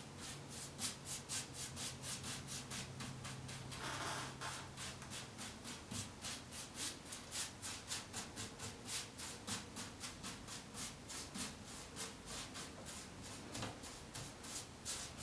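Paintbrush scrubbing milk paint onto chair spindles with quick, short back-and-forth strokes, about three to four a second. The brush is pressed hard to force the paint down into the open grain of oak.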